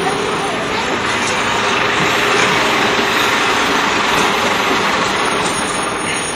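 A vehicle engine running steadily and loud, heard as an even noise, with voices under it.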